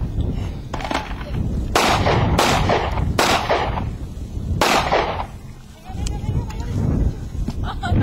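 Four handgun shots: the first about two seconds in, the next two following less than a second apart each, and the fourth about a second and a half later.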